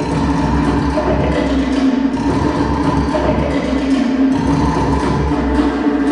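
Fast Tahitian drumming: a rapid clacking rhythm from a wooden slit drum (to'ere) over pulsing low drum beats, playing without a break.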